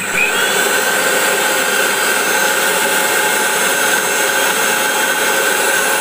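Bajaj electric mixer grinder running steadily with a constant motor whine, grinding fried onions into a paste.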